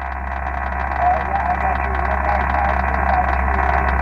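Receive audio from an Icom IC-7000 on the 20 m band through its speaker: steady, narrow-band static hiss with a weak station's voice faintly audible in it, sending back a signal report. A low steady hum runs underneath.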